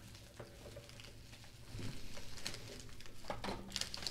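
Scissors cutting open a padded bubble mailer, with quiet rustling and crinkling of the envelope and a few sharper snips and clicks in the second half.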